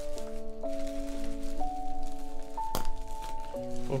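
Background music of held chords that step to new notes every second or so, with light crinkling of bubble-wrapped album packaging being worked open and one sharp crack about two and three-quarter seconds in.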